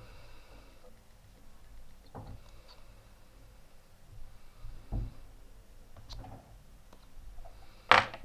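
Quiet handling noises of a small metal rebuildable dripping atomizer being worked by hand: scattered soft clicks and taps, a dull thump about five seconds in, and a sharp click at the end.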